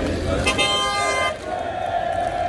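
A vehicle horn sounds once, about half a second in, for most of a second, over a crowd of football supporters chanting, whose chant carries on after the horn stops.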